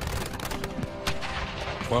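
Battle gunfire from a line of muskets: a rapid crackle of many overlapping shots, over background music with held notes.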